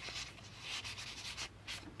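A paper card sliding and rubbing against cardstock as it is tucked into a band on an album page: soft scraping strokes, a longer one through the middle and a brief one near the end.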